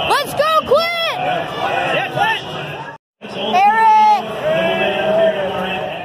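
A man's voice calling out in long, drawn-out phrases, typical of an announcer over a public-address system, with crowd noise beneath. The sound cuts out for a moment about halfway through.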